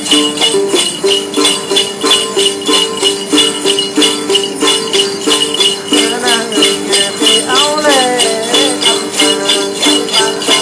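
Đàn tính, the Tày long-necked gourd lute, plucked in a repeating two-note figure, with a bunch of jingle bells (xóc nhạc) shaken on a steady beat, the typical accompaniment of Then ritual singing. A voice comes in with a sliding, wavering line about six seconds in.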